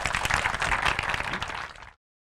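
Audience applauding with many hands clapping, thinning out and cutting off to silence just before the end.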